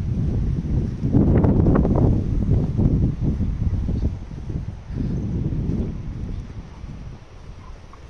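Wind buffeting the phone's microphone in gusts: a rumbling low noise that swells strongly between about one and three seconds in, again around five seconds, then eases off.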